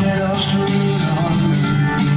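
A live band plays an instrumental country-folk passage led by guitar, with steady held notes under a melody line.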